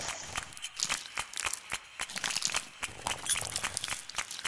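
Leaves rustling and crackling as they are handled, a string of small irregular clicks.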